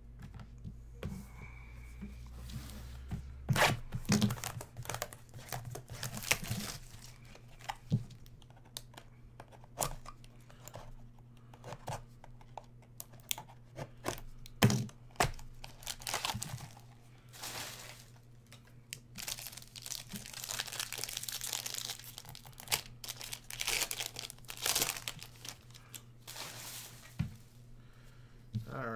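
A small cardboard trading card box being torn open by hand, with crinkling wrapper, sharp clicks and rustling as the box and cards are handled; a longer stretch of tearing comes about two-thirds of the way in.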